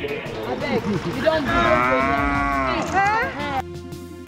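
A lion giving a long, loud moaning call that rises and then falls in pitch over about two seconds and ends in a downward swoop. Background music comes in just before the end.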